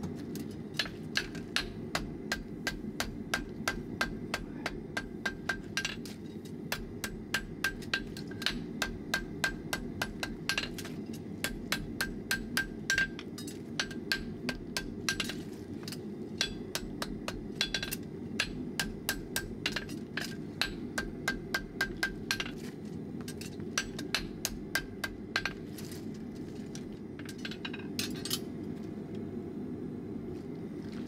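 A farrier's hammer strikes a red-hot steel horseshoe on the anvil to shape it. The quick, even blows come in runs of several seconds with short pauses between, and each blow rings clearly off the anvil.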